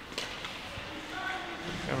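Faint ice-rink ambience of a hockey game in play, a low even hubbub from the arena with a light click just after the start and a faint distant voice about halfway through.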